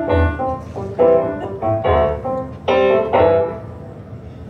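Electric stage piano playing a slow instrumental passage: four chords with bass notes struck about a second apart, each left to ring and fade, the last dying away near the end.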